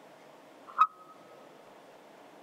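A single sharp click a little under a second in, much louder than anything around it, with a brief high ringing tone trailing off after it, over a faint steady hiss.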